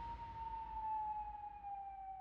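A single sustained high tone from the trailer's score, quiet and sliding slowly lower in pitch while a fading wash of noise dies away under it.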